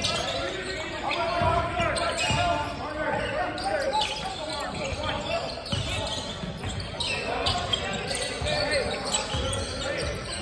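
Players' and spectators' voices echoing around a large gymnasium, with a basketball bouncing on the hardwood floor now and then in irregular thumps.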